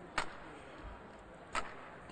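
Two badminton racket strikes on the shuttlecock during a rally: sharp cracks just under a second and a half apart, over faint hall ambience.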